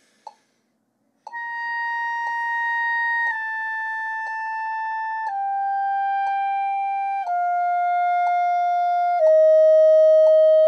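B-flat clarinet playing a slow descending C major scale from high C in half notes, each note held about two seconds, played normally with the register key. A metronome ticks once a second, and the clarinet comes in about a second in.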